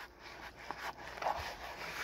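Spoon stirring macaroni and cheese in a plastic container: faint, irregular scraping with soft clicks.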